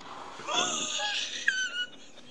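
A person's breathy, high-pitched wheezing laugh, squeaky and without words, lasting about a second and a half.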